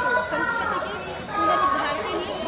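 A woman talking, with crowd chatter behind her.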